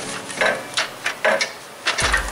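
An old A/C compressor being twisted and worked out of a car's engine bay, knocking and scraping against the surrounding parts: several short knocks with rubbing between them.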